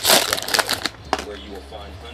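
Foil trading-card pack wrapper crinkling under the hands for about the first second, then a single sharp click.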